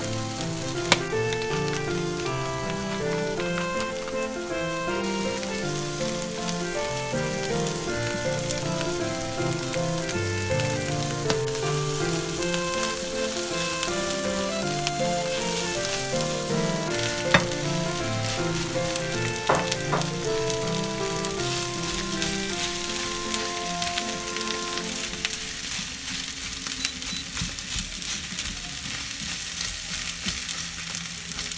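Egg, green onion and onion sizzling steadily in a hot nonstick frying pan as they are stir-fried with a silicone spatula, with a few sharp taps of the spatula on the pan. Background music with a melody plays over it and fades out near the end.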